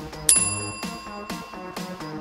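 A single bell-like chime from the workout interval timer rings about a third of a second in and fades over about a second and a half, signalling the end of the rest and the start of the next work interval. Background electronic music with a steady beat plays throughout.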